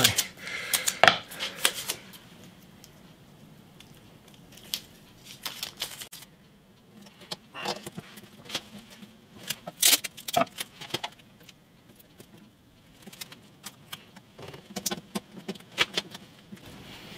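Masking tape being pulled off the roll, torn and pressed around a glued headstock joint: short spells of crackly tearing and small handling clicks, with quiet gaps between.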